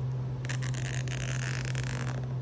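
A nylon zip tie being pulled through its locking head, a ratcheting zip that starts about half a second in and lasts about a second and a half. A steady low hum runs underneath.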